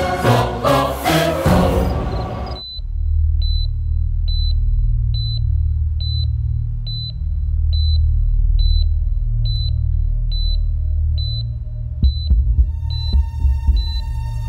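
Loud music cuts off about two and a half seconds in. A hospital patient monitor then beeps steadily, a short high beep a little under once a second, marking the patient's heartbeat, over a low steady drone. Sustained score tones come in near the end.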